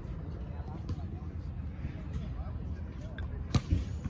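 A basketball bouncing on an outdoor court, with two sharp bounces close together near the end, over a steady low rumble and faint distant voices.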